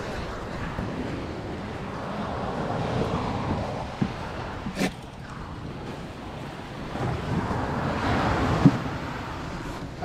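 Wind on the microphone and waves washing up on the beach, swelling twice, with a sharp click about five seconds in.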